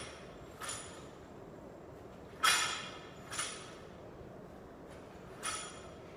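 Loaded barbell rattling and clanking through repeated power cleans: about five short metallic clanks, the loudest a little over two seconds in.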